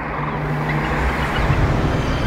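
Outro sound effect for a logo animation: a dense, noisy whoosh with a deep rumble that swells in loudness, leading into theme music near the end.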